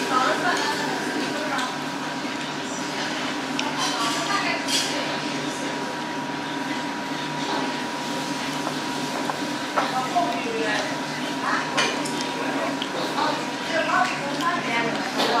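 Small restaurant dining room: a steady machine hum with a thin high steady whine, a few sharp clinks of dishes and cutlery, and snatches of voices.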